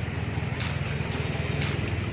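Daihatsu Feroza's four-cylinder engine idling steadily, an even low rumble with a regular pulse.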